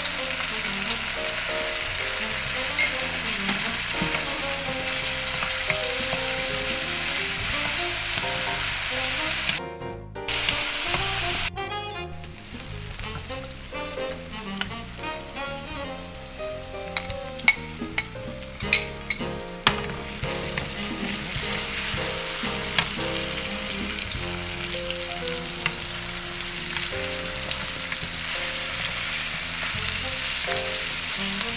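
Diced onion and garlic sizzling in hot oil in a carbon-steel wok, with a wooden spatula scraping and tapping against the pan as it is stirred. The sound drops out briefly about ten seconds in, and is quieter for a while with sharp clicks. The sizzle comes back full once the sliced chicken liver is in the wok and being stirred.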